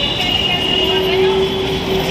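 Busy roadside traffic noise with background voices. A steady high tone runs through the first half and a lower held tone sounds from just under a second in.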